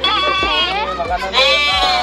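Sheep bleating, with one long bleat in the second half.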